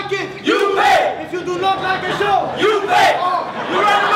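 Several men shouting and yelling in short, overlapping bursts over crowd noise in a large hall.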